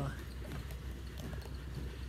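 Steady low hum of a ship's machinery, with a few light irregular knocks and rustles from a handheld phone being moved.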